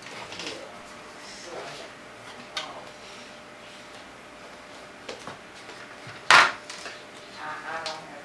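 Handling noise from a plastic Lite Brite board on a wooden desk: scattered light clicks and taps, with one sharp knock a little past six seconds in as the board is set down.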